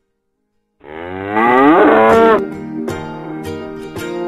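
A single loud, drawn-out lowing animal call about a second in, lasting about a second and a half, its pitch sliding. Soft music with plucked notes follows.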